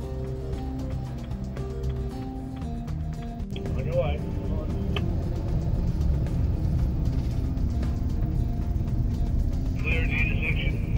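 Background music, which gives way about a third of the way in to the steady engine and road rumble of a moving car, heard from inside its cabin.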